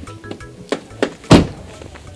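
A car door shutting with one heavy thunk a little past halfway, after a couple of lighter knocks, over background music.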